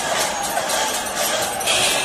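Metal hand cymbals struck in a steady rhythm, about two clashes a second, over the loud din of a packed festival crowd.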